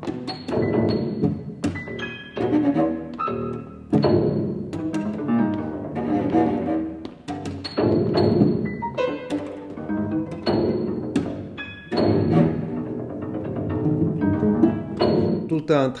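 Cello and grand piano playing a contemporary chamber piece together: a series of sharp struck attacks, each left to ring, with sustained pitched notes between them.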